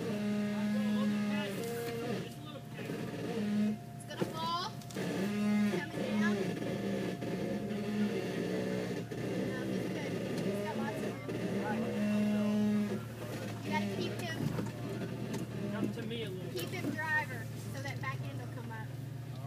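A vehicle engine running steadily at low revs, with distant voices talking over it.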